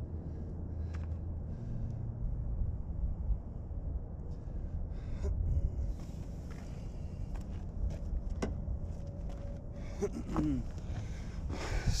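Steady low outdoor rumble with scattered light scuffs and taps of footsteps and sock-padded stick tips on gravel, a short breathy voice sound near the end, then the camera being handled.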